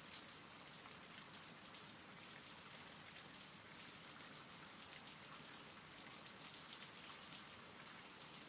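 Faint, steady rain with fine scattered droplet ticks, a continuous rain ambience track.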